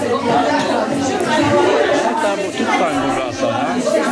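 Many voices chattering at once: a roomful of children and adults talking over each other.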